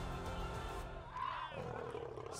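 Sustained low background music with a faint, arching wail from a woman about a second in, a cry like the screams being let out by the woman held on the floor.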